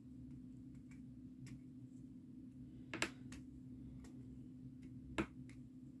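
Faint clicks and taps of a diamond painting drill pen picking up resin drills from a plastic tray and pressing them onto the canvas, with two sharper, louder clicks, one midway and one near the end, over a faint steady hum.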